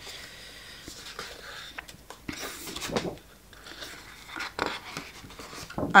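Sheets of scrapbooking paper being turned over and slid across one another in a paper pad, making soft rustles and swishes with a few light taps.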